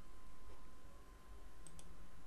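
Two quick, faint computer mouse clicks near the end, over a low steady room hum.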